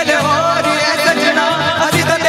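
A male voice sings a song through a microphone with wavering, ornamented held notes. An amplified acoustic guitar accompanies him.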